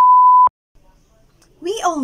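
A single steady electronic beep, one pure tone about half a second long, that starts and cuts off suddenly; after a short near-silence a woman starts speaking near the end.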